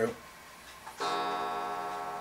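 A steady pitched hum starts suddenly about a second in and holds at an even level.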